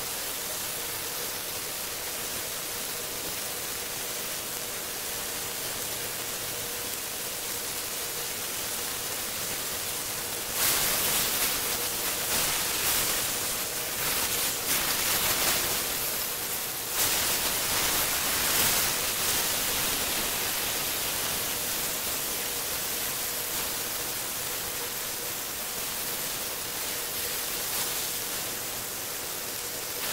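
Beef steaks sizzling in oil in a grill pan, a steady hiss. It swells louder about ten seconds in and again around seventeen seconds, as the steaks are turned with a spatula.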